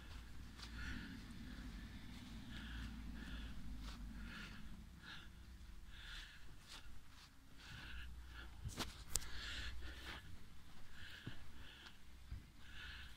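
Faint, close breathing of the person holding the phone as he walks, a breath every half second to a second, over a low rumble from handling. A single sharp click comes about nine seconds in.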